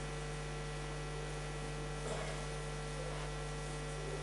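Steady electrical mains hum: a low drone with a few thin, higher steady tones, over a faint hiss.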